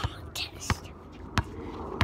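A basketball bouncing on an outdoor hard court: three sharp bounces, roughly two-thirds of a second apart.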